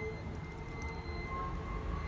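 Steady low background rumble with a faint, thin high whine over it; no distinct handling clicks or bell jingle.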